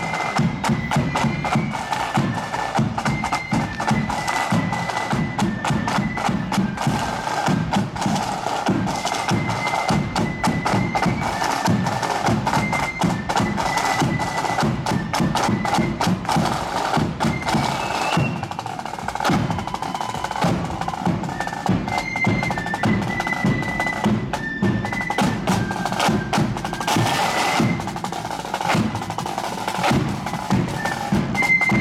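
Marching band music: side drums and a bass drum beating a steady march under a held, unbroken melody, with bagpipes sounding.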